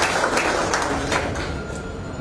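Audience applauding, a dense patter of clapping that fades away toward the end.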